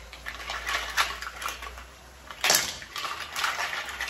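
Kitchen clatter at a steaming pot of mussels on the stove: light clicks and knocks of shells and cookware being handled, with one sharper knock about two and a half seconds in.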